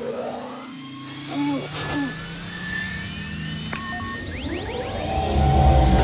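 Sci-fi intro music with held synthesizer tones and slow rising glides, two short electronic chirps about a second and a half and two seconds in, and a low spaceship-engine rumble that swells near the end.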